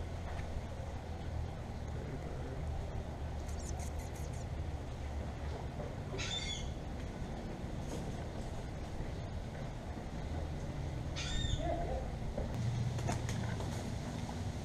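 A bird gives two short high calls about five seconds apart, over a steady low hum.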